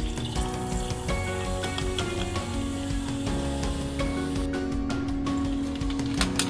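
Background music, with soda being poured from a plastic bottle into a glass of ice cubes underneath it.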